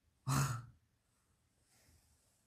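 A man's single short, breathy voiced exhale, like a sigh, lasting about half a second and starting a quarter second in.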